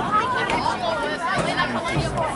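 Several people talking at once: overlapping chatter of voices with no single clear speaker, as from spectators and players along a football sideline.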